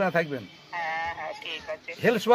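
A man's voice speaking, with one syllable drawn out and held steady for about half a second about a second in.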